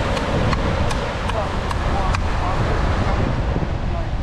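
Wind buffeting the microphone as a steady low rumble, with faint voices in the background and a few light clicks.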